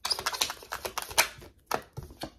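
A deck of tarot cards being shuffled by hand: a quick, dense run of papery clicks for about a second and a half, then a few separate snaps near the end.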